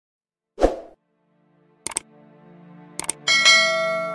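Subscribe-button animation sound effects: a short thud, then two pairs of mouse clicks about a second apart, then a bright bell-like ding that rings on and slowly fades. Soft background music comes in underneath about a second and a half in.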